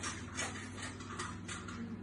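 Quiet room tone with a low steady hum and a few faint clicks of a small plastic toddler fork against a high-chair tray as food is picked up.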